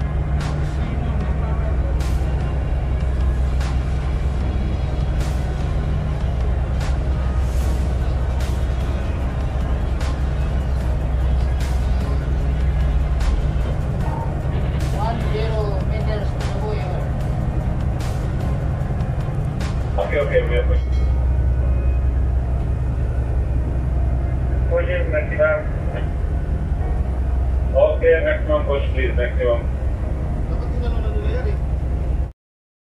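Offshore vessel's engines running with a steady low drone. Scattered sharp clicks come in the first half, and short bursts of voices come near the middle and toward the end.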